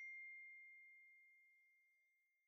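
A single faint, high, bell-like ding struck just before, ringing on one clear pitch and slowly fading away.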